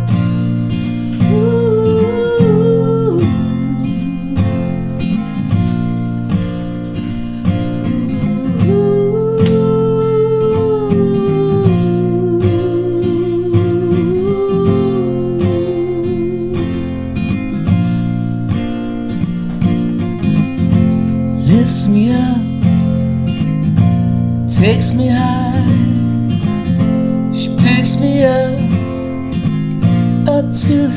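Acoustic guitar strummed in a steady rhythm, playing the opening of a song.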